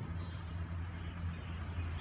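A steady low hum with a faint even background noise above it.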